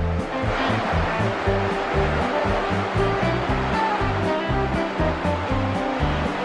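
Background music with a rhythmic bass line over the steady rushing of Thunder Creek Falls, a tall waterfall.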